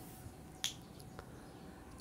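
Quiet room tone with one short, sharp click a little over half a second in and a fainter tick about a second later.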